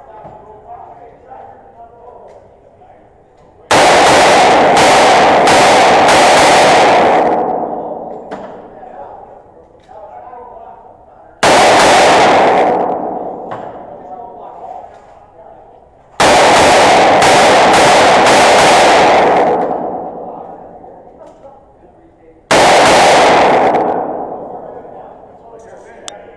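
Revolver fired in four quick strings, each shot followed by the long reverberation of an indoor range: several rapid shots about four seconds in, a short string near the middle, several more rapid shots a few seconds later, and two shots near the end, with quieter handling sounds between strings as the shooter reloads.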